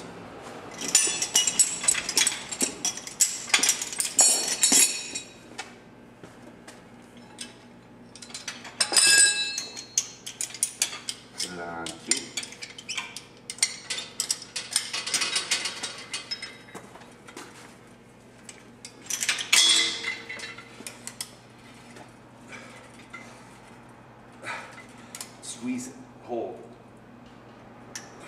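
Metal clinking and clanking from a gym cable machine: weight-stack plates knocking together and the stack's pin and cable handles being handled, in irregular bursts.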